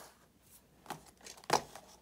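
Boxed diecast cars in cardboard-and-plastic window packaging being handled and set down on a countertop: a few light clicks and rustles, then a sharper knock about one and a half seconds in.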